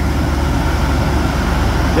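Heavy diesel truck engine idling, a steady low drone with an even pulse.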